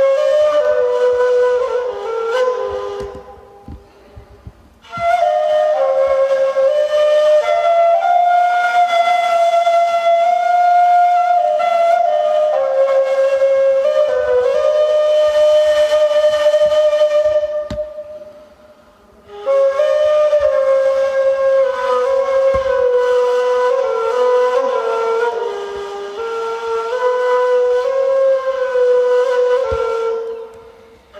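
Ney, the Turkish end-blown reed flute, played solo in slow melodic phrases of held notes. The playing breaks off twice for a pause, about four seconds in and again around eighteen seconds.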